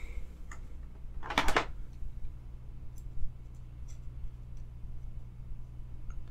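Faint, scattered light clicks from a folding knife and a Torx screwdriver being handled, over a steady low hum. A short vocal sound, like an "um", is heard about a second and a half in.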